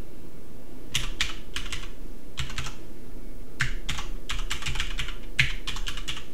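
Computer keyboard typing, keystrokes in short runs with brief pauses between them, as an email address is entered.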